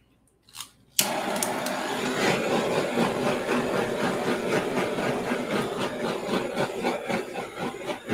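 Handheld torch flame lit about a second in, then a steady rushing hiss as it is passed over a wet acrylic pour made with silicone, the heat bringing up cells in the paint.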